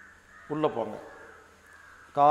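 A man's voice says one short, drawn-out syllable about half a second in. The rest is quiet, with a faint steady high-pitched tone.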